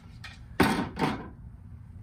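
Tennis rackets being set down, their frames knocking against a hard surface: a sharp knock about half a second in, then a smaller one about a second in.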